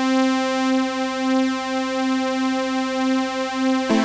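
Roland JD-Xi synthesizer holding one steady sawtooth note from three stacked oscillators, its tone slowly wavering and beating as one oscillator's fine tuning is turned. A new note starts just before the end.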